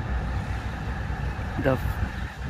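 A motor vehicle engine running at idle, a steady low rumble.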